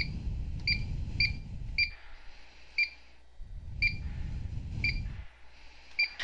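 Key-press beeps from the keypad of a Potter PFC-6000 series fire alarm control panel: seven short, identical high electronic beeps at irregular intervals, about half a second to a second apart, one for each key pressed. A low rumble runs underneath in two stretches.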